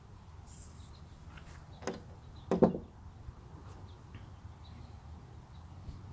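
Thin metal stiffener strip being slid out of a rubber wiper-blade refill by hand: faint rubbing, then a sharp click about two seconds in and a short squeak just after.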